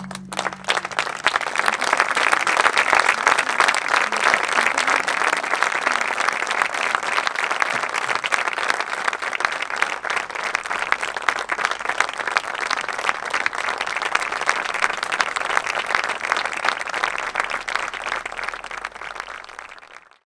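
Audience applauding at the end of a wind-band piece, with the band's final brass chord dying away as the clapping begins. The clapping swells over the first couple of seconds, holds steady, and fades near the end.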